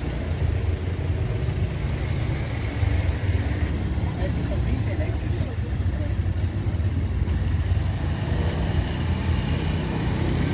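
City road traffic at low speed close by: cars and a motor scooter running and moving slowly, making a steady low drone, with indistinct voices mixed in.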